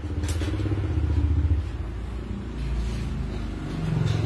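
Low motor rumble, like a vehicle engine, louder in the first second and a half, easing, then swelling again near the end.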